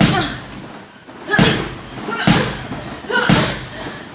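Boxing gloves landing punches: four heavy thuds spaced about a second apart.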